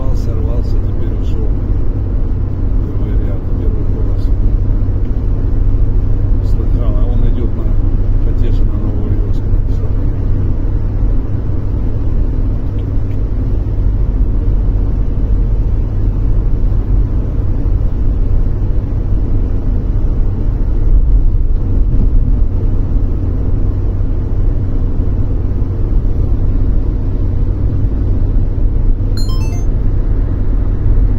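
Steady low road and engine rumble inside the cabin of a car cruising at highway speed.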